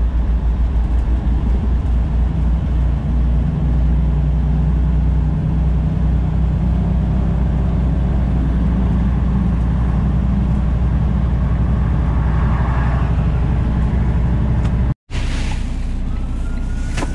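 Semi truck's diesel engine and tyre noise heard inside the cab at highway speed, a steady low drone. It drops out briefly near the end.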